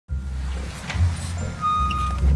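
Idling car engine, a steady low rumble, with a short, steady electronic beep coming in near the end.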